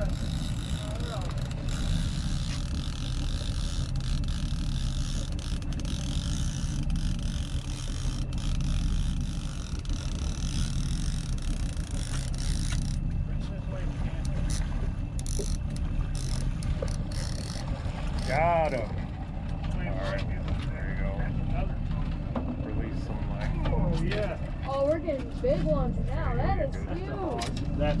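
Steady low rumble of a fishing boat under way, engine and water, with a high hiss that stops about halfway through. Scattered clicks and raised voices come in over the second half.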